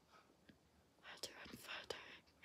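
Near silence: a pause between sentences, with a few faint mouth clicks and soft breath in the second second.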